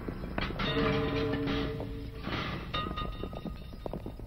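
Dramatic film score: a held horn-like chord for about a second and a half, over a low rumble with scattered knocks.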